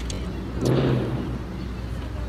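A motor vehicle briefly swells louder about halfway through, over a steady low outdoor traffic rumble.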